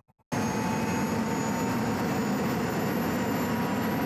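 Rolls-Royce gas turbine (a Tornado auxiliary power unit fitted to a Robinson R22 helicopter) running at high speed, brought up to 100% for flight. It makes a loud, steady rush with thin high whines on top that creep slightly upward, cutting in abruptly just after the start.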